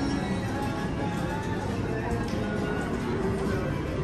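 Casino floor ambience: electronic jingles and tones from many slot machines over steady background music, with an indistinct murmur of voices.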